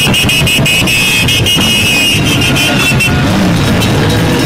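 Motorcycles riding past with their engines running, and horns beeping in rapid repeated high-pitched toots that stop about three seconds in.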